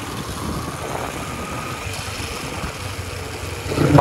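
Motorcycle running steadily at low speed on a wet road, its engine rumble mixed with tyre and wind noise, heard from the rider's own bike.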